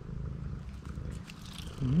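Tabby cat purring steadily while being stroked, close to the microphone. A person gives a short rising "um" near the end.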